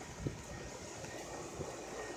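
Faint steady low rumble and hiss of outdoor background and microphone-handling noise, with one light knock shortly after the start.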